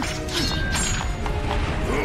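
Sword-handling sound effects: a quick series of sharp metallic clicks and scrapes as a sword is gripped and drawn, over background music.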